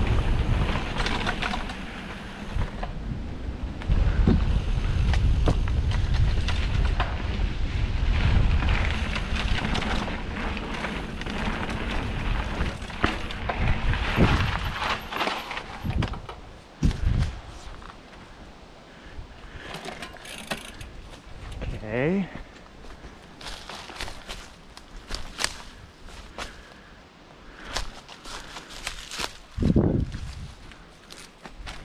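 Mountain bike rolling down a dirt forest trail, heard through the bike or helmet camera as a heavy rumble of tyres, rattle and wind on the microphone. The rumble stops after about 16 seconds with a couple of knocks, leaving quieter scattered clicks and rustling as the camera is handled, and a brief voice sound a little past the middle.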